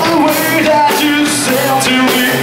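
A rock band playing live: electric bass, drum kit with cymbals and electric guitar, with a voice singing over the mix.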